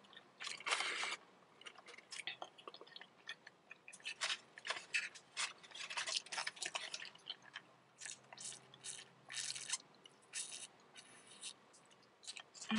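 Close-miked chewing of a Taco Bell breakfast crunchwrap: irregular short crunches and mouth clicks, some coming in quick runs.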